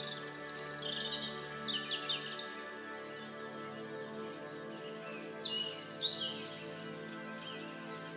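Soft, sustained ambient music pad with birdsong laid over it: clusters of bird chirps in the first two seconds and again about five to six seconds in.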